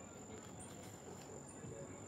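Crickets trilling faintly: a steady high-pitched tone, with two short, higher chirps over it.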